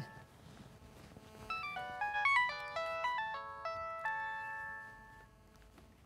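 A mobile phone ringing with a melodic ringtone: a quick electronic tune of short stepped notes that starts about a second and a half in and dies away about five seconds in.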